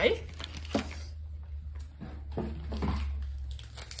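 Packaging crinkling and rustling in short, irregular crackles as hands rummage through a package of wax melt samples, over a low steady hum.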